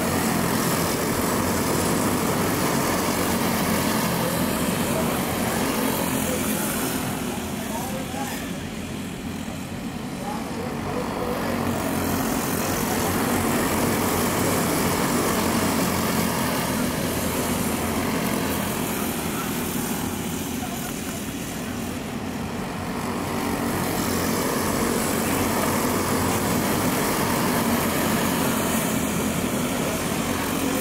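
A pack of dirt-track racing go-karts running flat out around the oval, their small engines making a continuous buzzing drone. The sound swells and fades twice as the pack comes past and goes away around the track.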